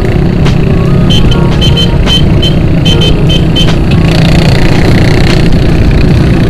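Motorcycle engine running steadily under way, with road and wind noise. About a second in, a series of short high beeps sounds for a couple of seconds.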